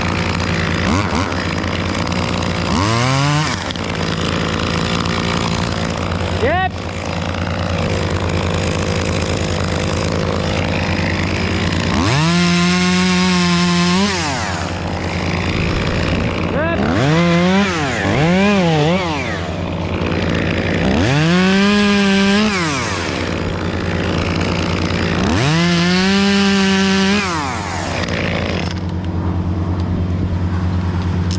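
Two-stroke top-handle chainsaw idling steadily, revved up to full speed several times for a second or two each, with a few short blips between, as it cuts through larch limbs.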